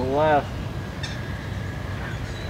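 A person's short drawn-out exclamation right at the start, then outdoor background noise with a low steady rumble and a faint steady high tone.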